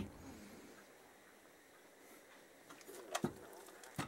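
Quiet garage room tone. Near the end come a few faint short sounds and a light knock as the bare aluminium wheel hub is lifted and handled.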